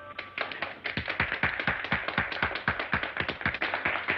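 A small group of people clapping in applause, with fast, uneven claps that thicken about a second in, heard on an old film soundtrack with the highs cut off.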